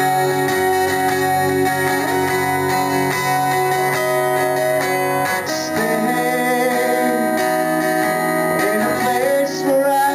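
Acoustic guitar strumming held chords, changing to a new chord about halfway through.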